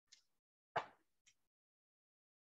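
Near silence broken by one short, soft pop-like mouth noise about three quarters of a second in, with faint clicks before and after.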